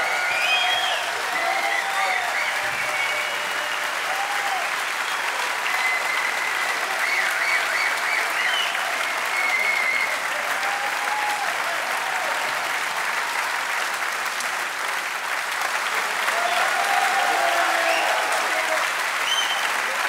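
Concert audience applauding steadily throughout, with cheers and whistles rising over the clapping.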